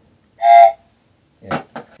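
Toy Thomas the Tank Engine train whistle blown once: a short, loud blast about a third of a second long.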